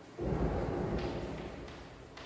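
A dull thud just after the start that rumbles on and slowly fades, with a faint click of chalk on the blackboard about a second in.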